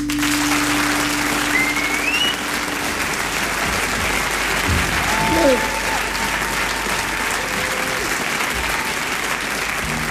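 Concert audience applauding as a song ends, with a rising whistle about two seconds in and a shout of a cheer around the middle.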